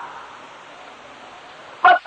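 A pause in a man's preaching, filled by the steady, even hiss of an old sermon tape recording; his voice comes back with a single word near the end.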